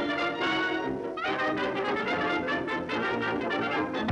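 Brass-led cartoon orchestra score playing, with a quick upward slide in pitch about a second in.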